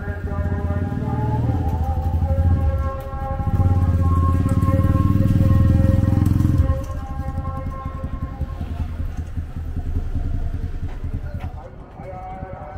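Small motorcycle engine running as it rides past close by. It is loudest in the middle and drops away suddenly about two-thirds of the way through.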